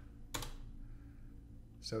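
A single keystroke on a computer keyboard about a third of a second in, then quiet room tone.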